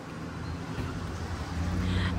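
Low, steady hum of a motor vehicle's engine running on the street, growing slightly louder near the end.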